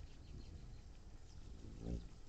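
A hummingbird's wings humming as it flies close, the low buzz swelling briefly near the end, over faint outdoor background.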